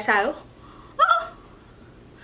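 A woman speaking: a drawn-out word falling in pitch, then a short, high vocal exclamation about a second in, with quiet room tone between.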